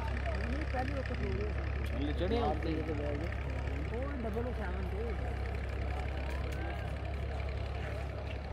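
People's voices talking, overlapping and not picked out clearly, over a steady low hum.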